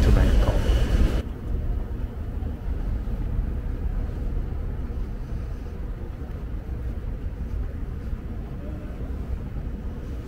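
A short voice at the start, then a steady low rumble from about a second in: the running noise of an airport moving walkway being ridden along a terminal concourse.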